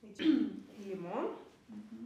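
Speech only: a woman speaking English slowly, a word and then a short phrase with pauses between them.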